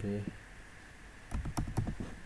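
Computer keyboard being typed on: a quick run of several keystrokes starting a little past a second in.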